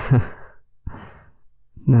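A man's breathy sigh at the start, falling in pitch, then a short quieter breath about a second in. Speech starts just before the end.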